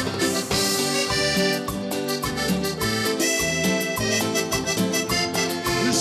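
Live band music: an instrumental passage of a tropical cumbia song, with a steady beat under a held melody line.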